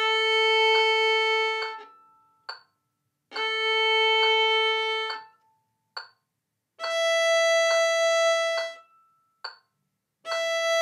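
Violin playing slow straight-bowed open-string notes: two long notes on the open A string, then one on the open E string, each held about two seconds with a pause between. A short click sounds in each pause.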